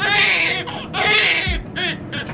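Newborn baby crying in short, high wailing bursts: two longer cries and a brief third near the end.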